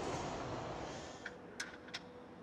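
Faint assembly-hall background noise fading away, with three light clicks in the second half.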